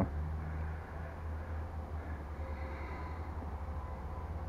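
A steady low hum with faint background noise, and no distinct event.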